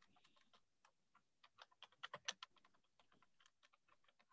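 Near silence, with a handful of faint, short clicks and taps bunched in the middle.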